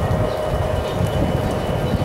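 Airbus A321-211's CFM56 jet engines at takeoff power: a steady rumbling noise with a faint steady whine over it.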